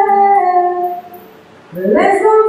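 A woman singing a gospel song solo into a microphone, holding one long note that fades out about a second in; after a short breath her voice slides up into the next phrase near the end.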